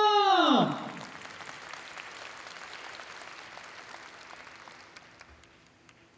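A held sung note in the intro music drops steeply in pitch and stops less than a second in, like a tape-stop effect. Audience applause follows, fading away over the next few seconds.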